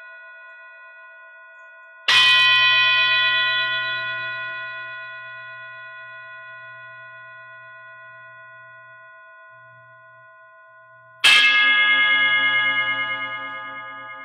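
Singing bowls struck twice with a mallet, about nine seconds apart, each strike ringing on and fading slowly. The second strike rings with a different set of tones and a slow wobble as it decays.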